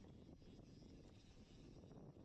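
Near silence: a faint, steady low rumble of wind on the microphone and tyre noise as a gravel bike rolls down a dirt trail.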